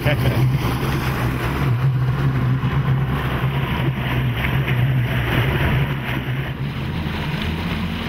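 Yamaha outboard motor running steadily at speed, driving a bass boat, with wind and water rushing past.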